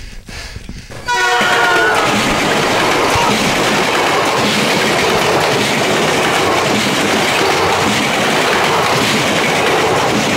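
A passenger train's horn sounds briefly, starting suddenly about a second in, then the steady, loud rushing and rattling of a double-decker commuter train passing close by.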